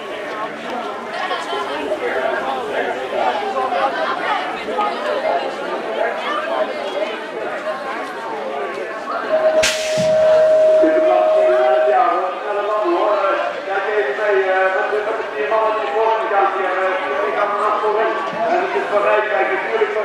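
BMX start gate: a steady electronic tone sounds for about two and a half seconds, and the metal gate drops with a sharp bang about ten seconds in as the riders set off. Spectators' chatter runs throughout.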